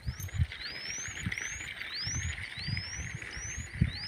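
A bird calling a thin, high, rising whistle over and over, about seven times in four seconds, over a faint steady high hiss. Irregular low thuds sit underneath.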